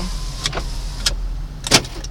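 Power window motor running in a 2009 Ford Crown Victoria Police Interceptor and stopping about a second in, then sharp clicks of the power door locks, the loudest near the end. The car's 4.6-litre V8 idles as a steady low hum underneath.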